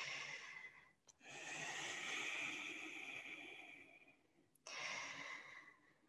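A woman breathing slowly and deeply: a short breath, then a long breath of about three seconds, then another short breath near the end.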